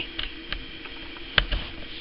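A few light clicks, with one sharper click about one and a half seconds in, over a faint steady background hum.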